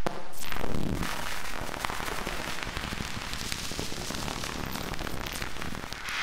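Dense crackling and popping sound effects with scattered sharp cracks like gunfire, louder in the first second and then steady, forming the intro of a neurofunk drum and bass track.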